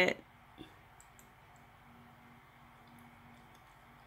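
Two faint clicks from the laptop's pointing device, about half a second and just over a second in, as a menu item is selected, then a quiet room with a faint steady low hum.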